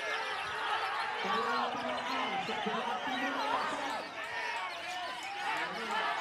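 Dense chorus of caged songbirds singing at once, white-rumped shamas among them, with many overlapping whistles and chattering phrases. A man's voice is heard in the background for a couple of seconds about a second in.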